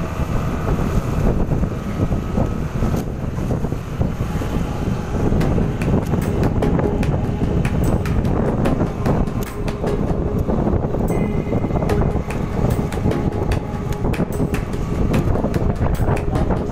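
Wind buffeting and crackling on the microphone over the low rumble of a vehicle moving at road speed.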